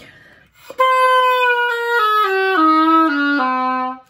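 An oboe played on a handmade double reed, stepping down through about six notes from roughly B4 to around middle C. The player finds this reed too open and unstable.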